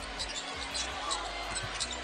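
Basketball being dribbled on a hardwood arena court, with short high sneaker squeaks and crowd noise behind.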